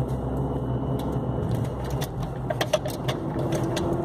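Car cabin noise while driving slowly: a steady engine and road hum with the air-conditioning fan running, and light irregular rattling clicks in the second half.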